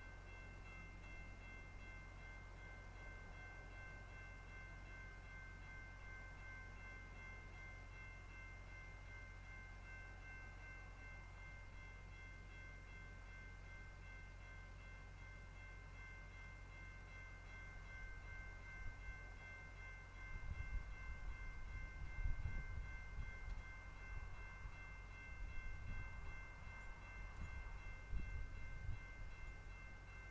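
Level-crossing warning bell ringing steadily while the gates are down. From about twenty seconds in, a low, uneven rumble joins it.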